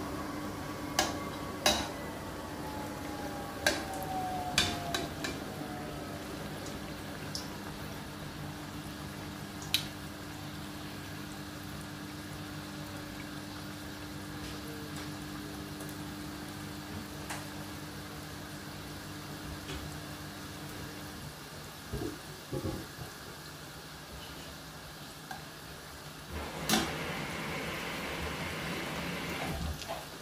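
Festival dumplings deep-frying in a pot of hot vegetable oil, a steady sizzle, with sharp clicks of metal tongs against the stainless steel pot now and then. A steady low hum runs underneath and stops about two-thirds of the way through, and near the end the sizzle grows louder after a click.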